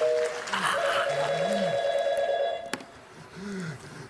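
An electronic telephone ringing: one fast-trilling two-note ring lasting about two seconds, starting just under a second in. A short steady two-note phone tone ends at the very start.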